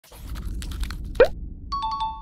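Logo-animation sound effects: a low rumble with light clicks, a quick rising pop a little over a second in, then a bright held chime near the end.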